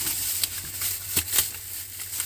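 Crinkling and rustling of a silver foil wrap around a jar as a hand grips and adjusts it, with a few light ticks and knocks.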